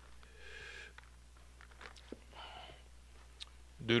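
Thin Bible pages being turned by hand: two soft rustles, one about half a second in and one about two and a half seconds in, with a faint click between them.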